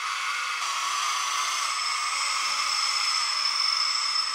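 Small electric motors of an RC tracked skid steer running steadily, a whir with a thin high whine that sets in about half a second in and a second whine joining near the middle.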